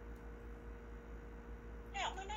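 A pause between speech with no distinct sound: only a steady low hum and faint hiss from the recording.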